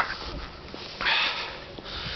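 A man sniffs once through his nose, a short breathy burst about a second in, after a small click at the start.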